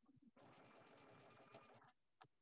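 Brother home sewing machine stitching a short seam: a quiet, steady run of about ten needle strokes a second that starts a moment in and stops just before the end. A few light knocks come just before the machine starts.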